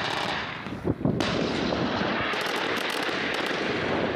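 Field sound of a live-fire military exercise: a dense, continuous roar of gunfire and battlefield noise with crackling shots and a sharp bang about a second in.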